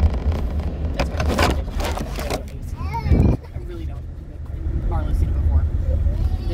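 Steady low rumble of a moving car heard from inside the cabin, with rustles, knocks and scrapes from the phone being handled, the loudest a heavy thump about three seconds in.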